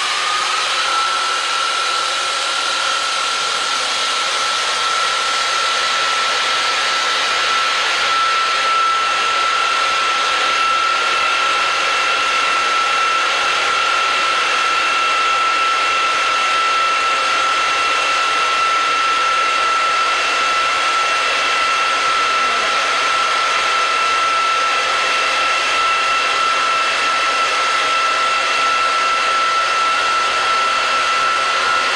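Tilting vacuum mixing machine running its blending agitator and high-speed homogenizer. A high whine rises and levels off at full speed about a second in, then holds steady over a loud steady machine noise. A second, higher whine joins around ten seconds in.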